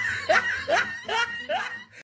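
A person laughing in a run of short "ha" bursts, about two a second, trailing off near the end.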